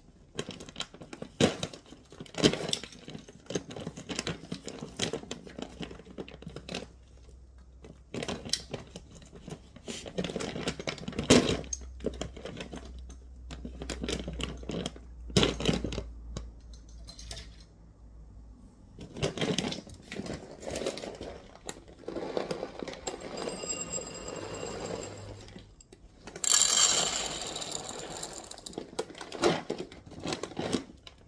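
Plastic cat-food bag crinkling and dry kibble rattling as the bag is handled and tipped toward a bowl, with scattered clicks and small knocks throughout. A longer, louder rustle of the bag comes near the end.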